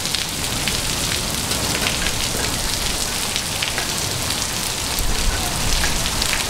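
Heavy rain pouring down onto gravel and pavement: a steady, even hiss of splashing drops.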